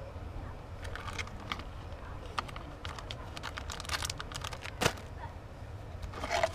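Plastic lure packaging being handled: a run of light crinkles and clicks as a soft-plastic worm is slid back into its bag and hands rummage in a cardboard box, with one sharper click about five seconds in. A steady low rumble runs underneath.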